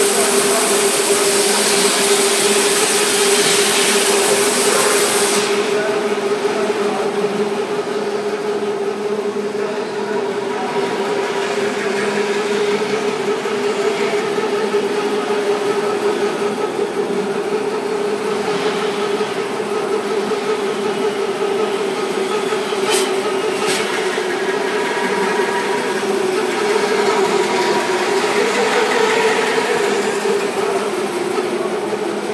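A honeycomb-board corner-rounding machine with a vertical band-saw blade runs with a steady hum. A loud hiss runs through the first five seconds or so, and two sharp clicks come about a second apart later on.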